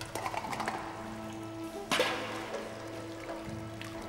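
Water being scooped and poured, with a loud splash about two seconds in, over background music with steady held tones.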